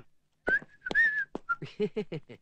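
A person whistling a few short, high notes, broken up by a couple of sharp clicks.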